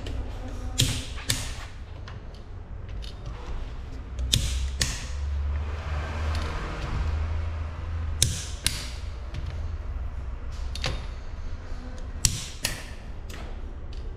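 A torque wrench tightening a car's wheel bolts, giving sharp clicks as each bolt reaches its set torque. The clicks come mostly in close pairs, several times over, with a low steady hum underneath.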